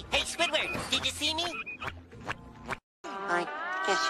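Cartoon soundtrack with sharp clicks and a wavering, warbling voice over a low hum. It cuts off to silence just under three seconds in, then music with long held notes that slide in pitch begins.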